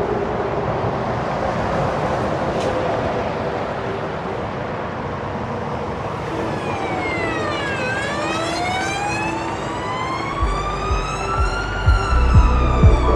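A dense rushing noise wash. A little after halfway, a siren-like wail sweeps down and back up. Near the end, low thuds come in as a bass beat starts.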